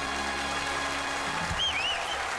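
A swing big band with brass holds the final chord of the number, struck again about a second and a half in. A short warbling whistle sounds near the end.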